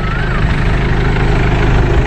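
An engine idling steadily, a low even rumble, with a faint wavering whistle-like tone near the start and again near the end.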